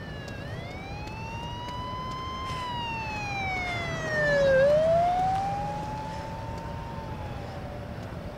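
An emergency vehicle's wailing siren, its pitch sweeping slowly up and down in long cycles. It is loudest about halfway through, over a low steady rumble.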